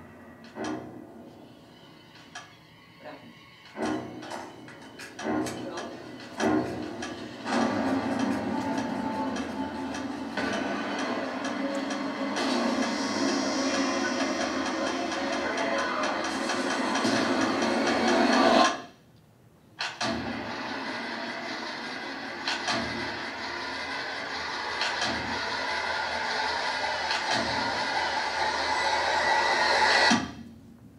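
Horror film trailer soundtrack played through a hall's speakers. Scattered sharp hits and short lines of dialogue give way to a dense, swelling build of score and effects that cuts off suddenly about two-thirds of the way in. After a second of near silence, a second build grows louder to the end.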